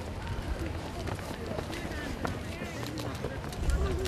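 Children running and hopping through hurdle drills on a synthetic athletics track, with light footfalls and faint children's voices over a steady low outdoor rumble.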